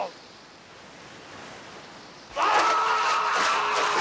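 Low surf and wind noise, then about two and a half seconds in a man lets out a long, held battle cry. During the cry, feet splash through shallow sea water.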